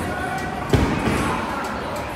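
A single heavy thump about three quarters of a second in, over the chatter and noise of a busy room.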